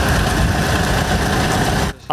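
A vehicle engine running steadily at idle.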